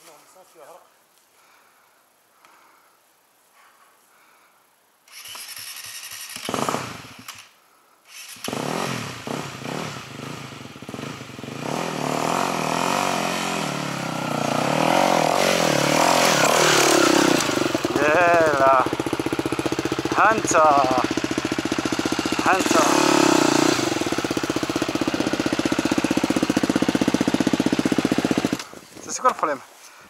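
Enduro dirt bike engine starting about five seconds in and catching, then running and revving as the bike climbs, loud and steady for most of the second half. It cuts off shortly before the end.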